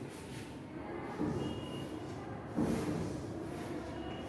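Chalk scratching and tapping on a blackboard as a word is written, over a steady background noise, with louder strokes about a second in and again near three seconds.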